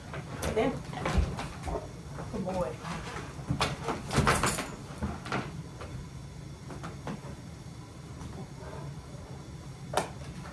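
A puppy and its handler moving about on a wooden floor: scattered light knocks and clicks, mostly in the first half and loudest about four seconds in, with some soft voice sounds.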